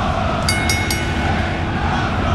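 Steady running noise inside a Shinkansen bullet-train cabin, a low rumble under an even hiss. Three short high-pitched beeps come about half a second in.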